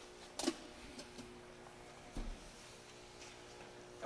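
A few faint clicks and knocks from handling the rear fold-down armrest and cup holders in a car's back seat, with one soft thump about two seconds in.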